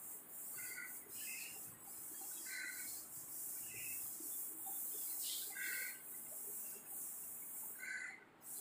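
A small bird chirping, short two-note chirps at irregular intervals of about a second, over faint rubbing of a duster wiping chalk off a blackboard.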